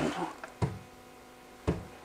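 Two light fingertip taps on the plastic case of a plug-in Plug & Safe vibration-sensor unit, about a second apart, testing whether the sensor picks up a tap and trips.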